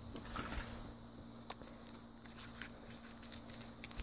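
Faint handling sounds of small plastic items and packets: a short rustle about half a second in, then a few light clicks as packets are picked out of a plastic kit box.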